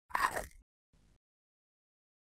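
Cartoon bite sound effect: one crisp bite-and-crunch lasting about half a second, then a much fainter crunch about a second in.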